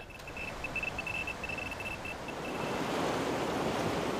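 Rushing water of a swollen river: a steady noise that grows louder toward the end. Over the first three seconds a high, broken tone sounds on and off.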